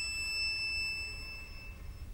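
A single high, thin violin note is held and fades away before the end, leaving only a faint low hum.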